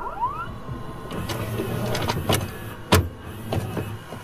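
Sound effects of an animated logo sting. A short rising glide opens it, then a steady low hum runs under scattered sharp clicks, with one loud sharp hit about three seconds in.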